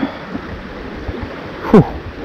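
Steady rush of river water running past the bank. Near the end, a short vocal sound from the angler falls in pitch.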